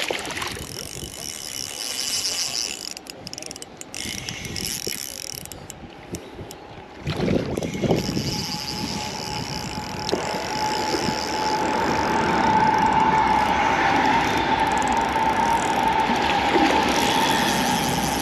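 Spinning reel working while a hooked fish is played: the drag ticks, then the reel whirs steadily as line is wound in, louder over the second half. There is splashing from the fish at the surface near the start.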